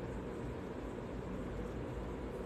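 Steady low background noise, an even hiss and rumble with no distinct events.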